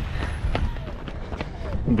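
Running footfalls on asphalt with wind rumbling on a body-worn camera's microphone, from a runner jogging at race pace. The footfalls come as faint, regular steps.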